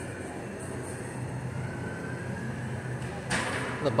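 Indoor room tone with a steady low ventilation hum. A short rush of noise comes just before the end.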